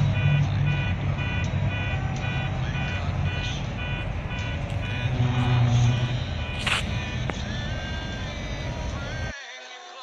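Ford Explorer SUV driving slowly across a parking lot, heard as a steady low rumble with an evenly repeating tune of short tones laid over it. It cuts off suddenly about nine seconds in.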